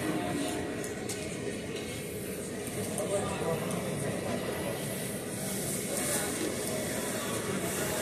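Indistinct murmur of many people's voices over a steady background hum, with no single voice standing out.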